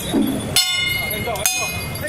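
Two sharp metal clashes from the procession's percussion, about a second apart, each ringing briefly over crowd chatter.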